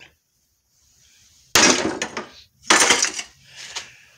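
Clatter of metal scrap parts being handled and knocked together, in three bursts: a loud one about a second and a half in, then two shorter ones.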